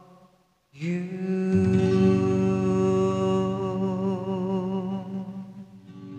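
Acoustic guitar: after a held sung note fades and a brief pause, a chord is strummed about a second in and left to ring, with a low bass note joining shortly after. The chord slowly dies away.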